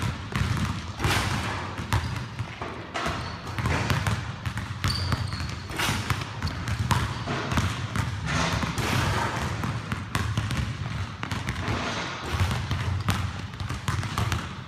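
Basketballs bouncing on a hardwood gym floor, a run of irregular thuds.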